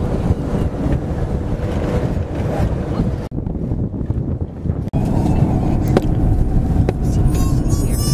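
Wind buffeting the microphone on an open elevated walkway. About five seconds in there is an abrupt change to the steady low rumble of a car cabin on the road. Near the end a child gives a high shriek that falls in pitch.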